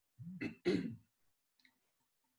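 A man clearing his throat: two short rasps in quick succession within the first second.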